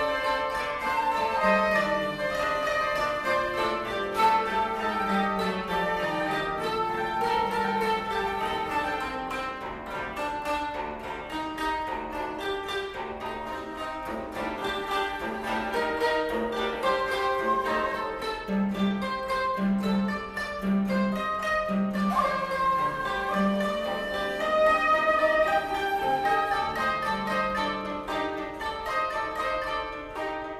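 Koto ensemble of several 13-string koto and a 17-string bass koto plucking interlocking melodic lines. About two-thirds of the way through, a low note is repeated in short, even strokes beneath them.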